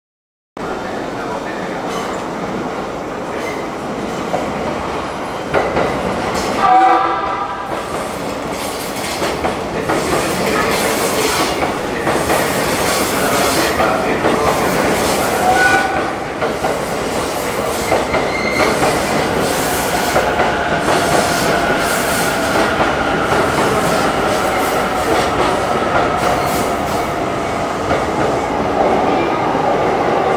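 E231 series electric train rolling into a station platform, with wheels running over rail joints and points. A short horn blast sounds about seven seconds in. From about twenty seconds in, a steady high whine rises over the rumble as the train draws near.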